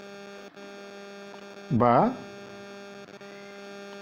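Steady low electrical hum with a buzzy edge, an interference drone picked up by the recording. One short spoken syllable cuts through it about two seconds in.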